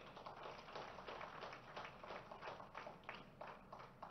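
Faint, scattered hand clapping from an audience: a loose patter of many short claps.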